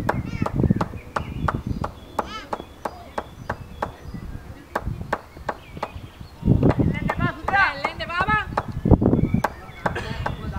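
Open-air sound from a cricket field: sharp clicks recur through the whole stretch, with low gusts and loud raised voices calling out about two-thirds of the way through, as the ball is played.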